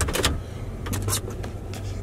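Plow pickup truck's engine running steadily, heard from inside the cab, with a few sharp clicks near the start.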